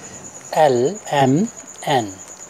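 A few short spoken syllables, over a high, steady pulsing trill of an insect chirping continuously in the background.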